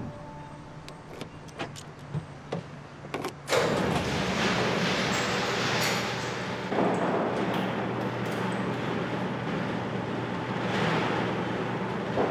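Footsteps on pavement, a sharp click every half second or so, over a low steady hum. About three and a half seconds in, a steady outdoor background noise comes in suddenly and carries on.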